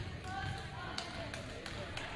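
Volleyball rally in a gymnasium: a few sharp knocks in the second half as the ball is played, over spectators' voices in a reverberant hall.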